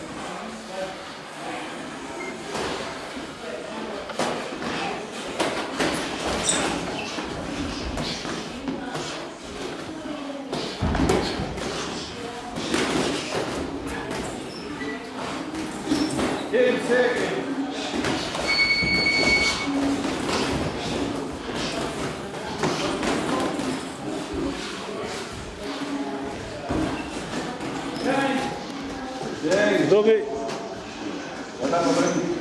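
Boxing sparring in an echoing gym: gloves thudding on bodies and pads, with repeated sharp knocks and one heavy thud about a third of the way in, under voices talking. A short electronic beep lasts about a second, about two-thirds of the way through.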